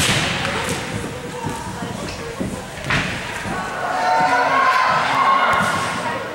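Broomball game play in an echoing indoor ice arena. There is a sharp knock right at the start and another about three seconds in. Players' indistinct shouts grow louder through the second half.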